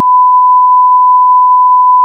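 A censor bleep: one loud, steady, high pure beep laid over the speech to mask a swear word, with all other sound cut out beneath it.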